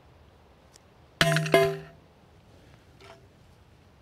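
A brick dropped from chest height hits an XTECH MAG47 polymer AK magazine lying on a steel plate about a second in: a sharp clang with a quick second hit as it bounces, and the steel plate rings for about half a second. A faint small knock follows near the end.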